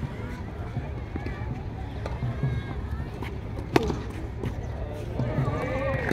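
A tennis ball struck by a racket on a serve: one sharp crack about four seconds in, with a couple of fainter hits around it, over low background chatter and wind rumble on the microphone.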